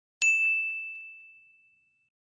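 A single bright ding from a notification-bell sound effect, struck about a quarter second in and ringing out as one high tone that fades over about a second and a half.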